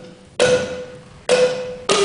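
Gyil, the Ghanaian wooden xylophone with gourd resonators, struck with mallets. There are three separate strokes: the first two on the same bar and a lower bar near the end, each ringing out and fading.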